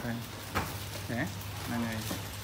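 Paper and plastic rustling and crinkling as a pile of notebooks, pens and wrapped school supplies is handled and sorted by hand, with a sharp click about half a second in.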